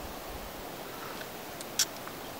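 Quiet, steady outdoor background hiss with one short, sharp click near the end.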